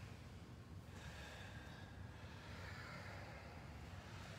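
Faint breathing of people moving through yoga poses, with one long breath from about a second in, over a low steady room hum.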